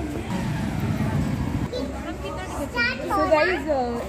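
Talking voices, one of them fairly high-pitched, starting about halfway through. A low rumble comes before them in the first second and a half.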